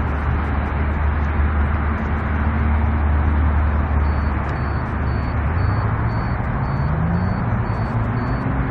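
Car running, heard from inside: a steady low engine hum and road noise, with the engine note rising about six seconds in as it picks up speed.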